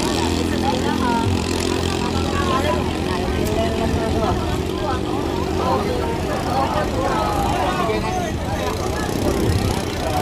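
Steady drone of small 7 hp boat engines racing, mixed with many overlapping voices of onlookers talking.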